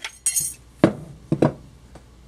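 Larger Roper Whitney hand notcher cutting a notch in a sheet of metal. The sheet rattles briefly near the start, then the notcher's jaws close with two sharp metallic snaps about half a second apart, about a second in.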